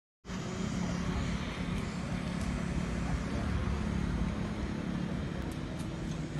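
Steady low hum and rumble of a running motor vehicle engine, cutting in abruptly just after the start.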